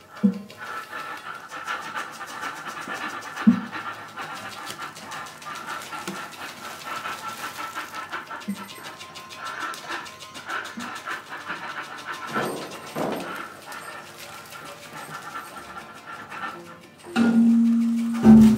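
Free improvised music for percussion, double bass, guitar and electronics: a dense, fine crackling texture with high ringing tones and a few soft low knocks. About a second before the end a loud low sustained note comes in.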